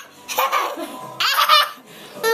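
Toddler laughing in high-pitched bursts, twice.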